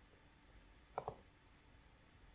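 A computer mouse button clicked once, a quick press-and-release pair of clicks about halfway through.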